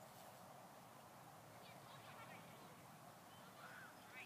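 Near silence with a few faint, short bird calls, one near the middle and a couple near the end.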